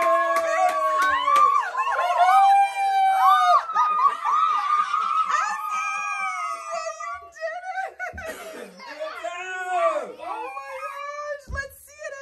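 Several young girls squealing and laughing with excitement, high overlapping shrieks that slide up and down in pitch.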